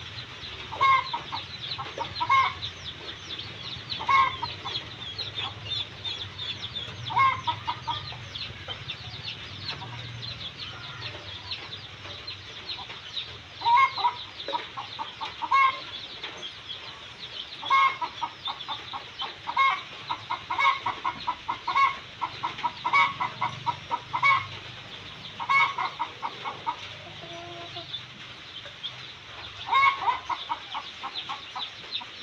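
Newly hatched chicks peeping continuously, a dense stream of short, high, falling chirps, with louder, lower calls coming every second or two.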